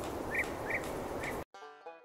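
Steady outdoor background hiss with four short bird chirps, cut off abruptly about one and a half seconds in by quieter plucked-string music.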